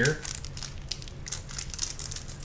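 A foil snack wrapper crinkling as it is handled and pulled open in both hands: a dense run of quick, irregular crackles.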